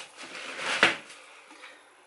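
Handling noise as a grocery item is picked up: a short rustle, then one sharp knock about a second in, followed by quiet room tone.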